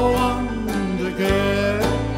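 Banjo picked in a country-bluegrass song, with regular plucked notes over a steady bass line and a man's voice singing a held, bending note.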